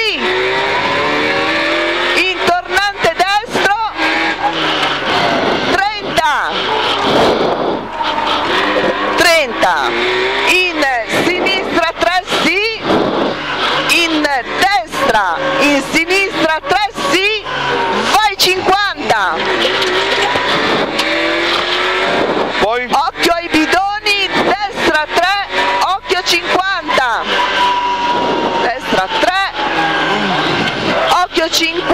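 Rover 216 rally car's 1.6-litre engine heard from inside the cabin at full stage pace, its pitch repeatedly climbing and dropping with throttle, gear changes and braking between corners.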